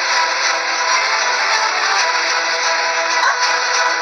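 Dramatic background music score: sustained, held chords of several steady tones with no clear beat.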